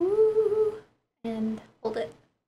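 A woman humming with her lips closed. The first note is held fairly high for almost a second, then come two shorter, lower notes.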